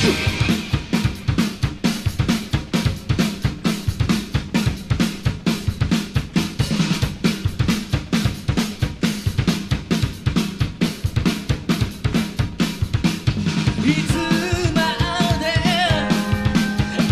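Heavy metal recording in a drum-led passage: bass drum and snare in a fast, steady beat with cymbals. A melodic lead part with wavering notes comes back in near the end.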